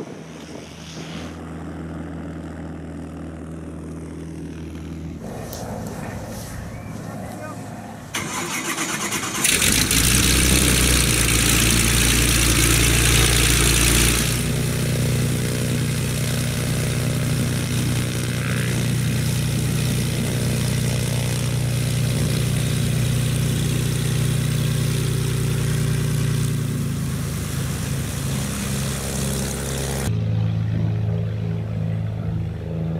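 Small single-engine propeller aircraft's piston engine running. It gets sharply louder about a third of the way in, with a loud rushing hiss for a few seconds. It then settles into a steady engine note whose pulse changes near the end.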